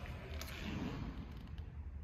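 Quiet indoor room tone: a steady low hum with faint handling noise and a faint click about half a second in.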